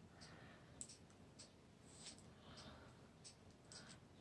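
Near silence: faint room tone with a handful of soft, scattered small clicks.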